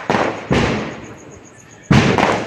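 Three firecracker bangs in quick succession, each sudden and followed by a fading tail; the loudest comes near the end.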